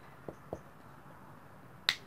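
Quiet handling of a whiteboard marker: two faint taps, then one sharp, bright click near the end.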